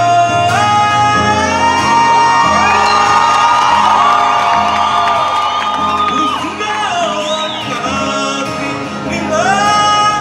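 A man singing live to his own acoustic guitar in a large theatre, holding long high notes that slide between pitches.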